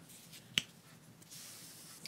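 A single short, sharp click about half a second in, against faint, quiet handling of yarn.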